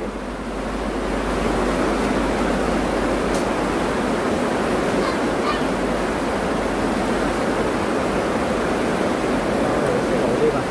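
Steady rush of water with no pitch or rhythm, swelling slightly about a second in, heard during a flash flood with knee-deep water.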